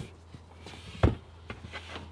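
A single dull knock about a second in, followed by a few faint clicks, as the lid and aluminum frame of a van's under-bench storage bin are handled. A low steady hum runs underneath.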